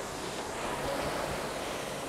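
Concept2 RowErg's air-resistance flywheel spinning, a steady rushing of air as the rower takes one drive stroke from catch to finish.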